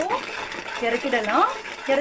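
Steel ladle stirring and scraping thick jaggery syrup in a metal pot.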